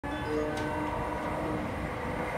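A JR West 225-5000 series electric train approaching on the rails while still some way off: a steady low rumble with a few faint held ringing tones over it.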